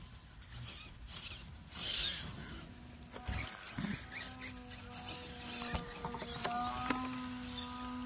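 Footsteps and rustling through dry grass, then from about four seconds in a steady whine with a few overtones, which shifts slightly in pitch partway through. The whine comes from a radio-controlled truck's electric motor, which has been declared broken.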